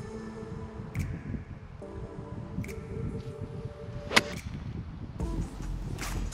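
A golf iron striking a ball once, a single sharp crack about four seconds in, over background music with sustained tones.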